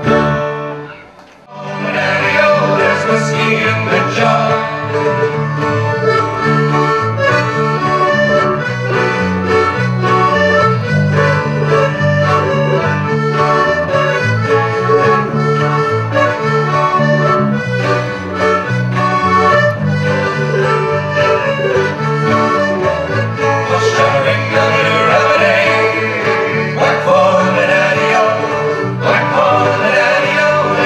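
Live folk band playing an instrumental passage on mandolin, accordion and guitars, with a steady rhythm. The music cuts out briefly about a second in, then comes back in full.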